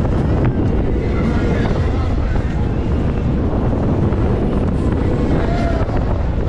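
Wind buffeting the ride-mounted camera's microphone as a swinging fairground thrill ride carries it through the air, a steady low rumbling rush. Faint voices and fairground noise sit underneath.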